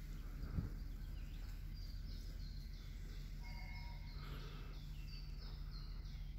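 A small bird chirping over and over, short high calls a few times a second, over a steady low hum. A brief low knock sounds about half a second in.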